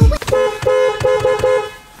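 Car horn honking in a quick run of about five short toots.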